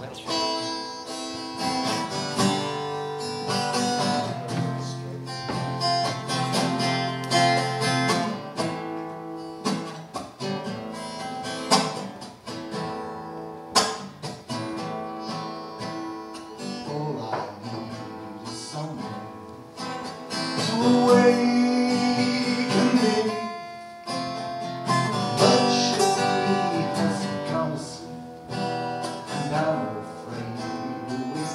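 Solo acoustic guitar playing the opening of a song live, with a man's singing voice coming in over it about two-thirds of the way through.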